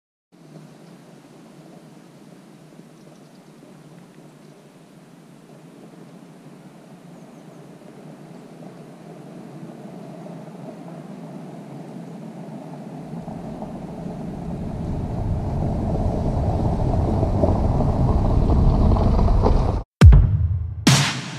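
Jeep Renegade with its 1.0-litre turbo three-cylinder petrol engine driving toward the camera over a leaf-covered forest road. The engine and tyre noise grow steadily from faint to loud, with a deep rumble coming in over the last several seconds, and the sound cuts off suddenly just before the end.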